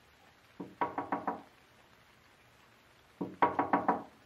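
Knocking on a door: two quick runs of about five raps each, the second coming about two and a half seconds after the first and a little louder.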